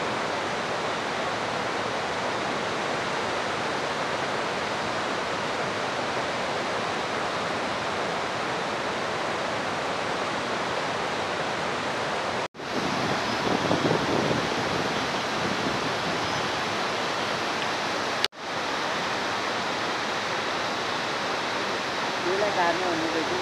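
Steady rushing water, a dense even noise at a constant level, cut off for an instant twice by edits, about twelve and eighteen seconds in.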